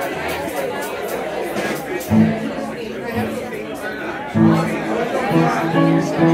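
Crowd chatter in a bar with live-band instruments: an electric guitar plays a couple of low held notes about two seconds in, then a string of held notes from about four and a half seconds on.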